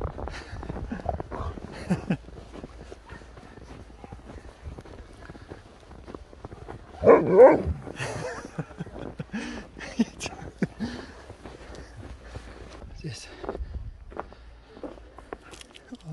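A husky making its talking vocalisations: one loud, wavering outburst about seven seconds in, with shorter, quieter vocal sounds before and after it.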